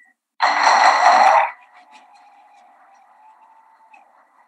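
Applause from a roomful of people, heard over a remote video-call link. A loud burst of clapping comes about half a second in, then after about a second it drops to a faint, garbled remnant with a thin steady tone.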